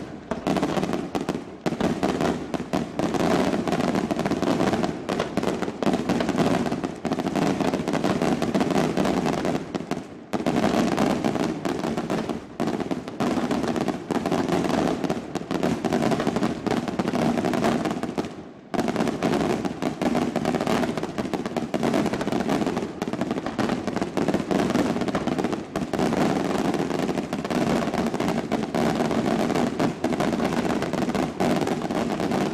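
Daytime fireworks display: a dense, continuous barrage of rapid bangs from aerial shells bursting overhead, briefly easing about ten seconds in and again near eighteen seconds.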